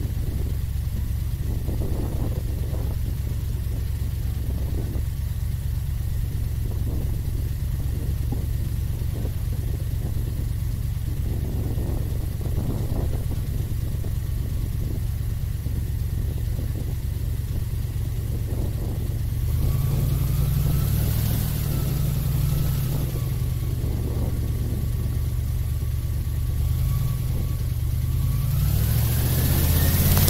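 Airboat engine and caged propeller running at a steady low throttle, then revving up about two-thirds of the way in, settling back, and rising in pitch again near the end.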